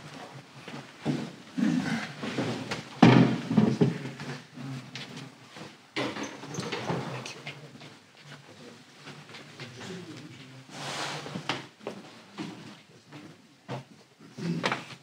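Photographic prints and mat boards being handled: irregular rustles, slides and knocks as they are picked up and set against a display stand, the loudest knock about three seconds in.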